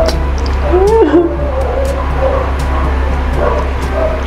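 A short whining call that rises and then falls in pitch about a second in, over a steady low hum.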